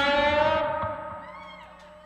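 A rock band's last chord ringing out and fading away, the held electric guitar notes dying down over about a second and a half.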